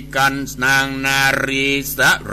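A man's voice chanting a Buddhist sermon in Thai verse in a melodic style, holding long notes that glide between pitches. A steady low hum runs beneath.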